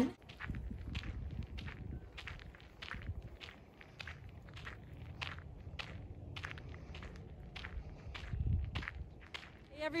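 A person's footsteps on a gravel trail at a steady walking pace, about two steps a second, over a low rumble.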